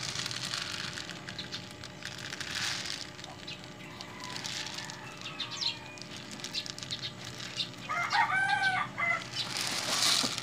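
Dry fish pellets rattling as they are poured from a plastic bottle into its cap, with the bottle's plastic crackling in the hand. A chicken calls once, for about a second, near the end.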